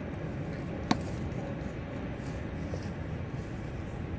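A single sharp crack about a second in: a wooden two-by-four used as a bat striking a ball, set against a steady low background rumble.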